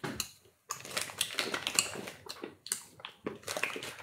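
A plastic snack pouch crinkling and rustling in the hands as it is opened: a quick, irregular run of sharp crackles.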